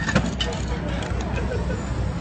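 Busy city street at night: a steady low traffic rumble under a murmur of voices, with a couple of sharp clicks just at the start.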